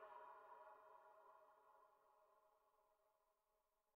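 The last sustained electronic tone of a dubstep/experimental track, several steady pitches ringing together, fading away and gone by about two and a half seconds in.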